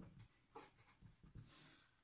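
Faint scratching of a pen writing letters on paper: a quick run of short strokes, then a slightly longer stroke in the second half.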